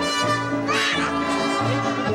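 Live band music with brass prominent over a steady bass line, and a bright brass phrase about a second in.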